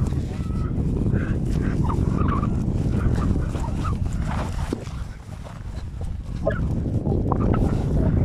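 Scattered short, high animal calls and chirps over a loud, steady low rumble.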